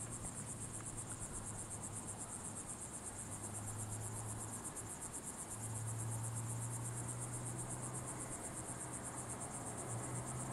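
Bush-crickets singing in a continuous high, rapidly pulsing trill from the grass, over a faint low hum that grows stronger about halfway through.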